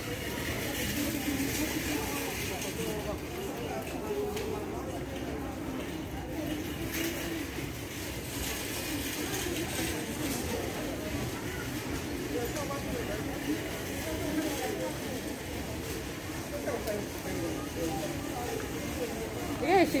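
Indistinct background voices of shoppers, a steady low murmur with no clear words.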